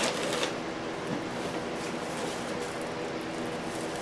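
A steady low hum with a few faint steady tones. Near the start there is a faint rustle of a plastic bag and a flour scoop.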